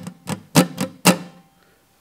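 Steel-string acoustic guitar strummed with a pick in a damped rhythm, the heel of the picking hand muting the strings so each strum is short and choked. Four quick strums come about a quarter second apart, then the last one fades away in the second half.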